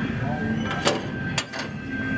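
Shop-floor background in a store aisle: a steady faint hum tone and distant murmur, with two sharp clicks about half a second apart around the middle.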